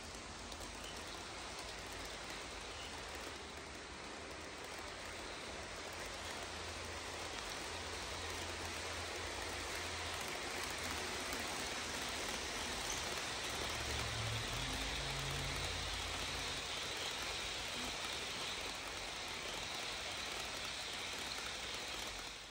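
HO scale model passenger trains rolling along the track: a steady hiss of metal wheels on the rails with a low motor hum underneath. It grows louder toward the middle as the trains pass closest.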